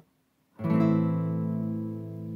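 Classical guitar strummed once on an A minor chord about half a second in, the chord ringing on and slowly fading.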